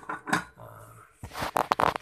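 A glass rice-cooker lid being set onto the pot: a few light clinks, then a loud rough rasping scrape and rattle of the lid against the rim in the second half.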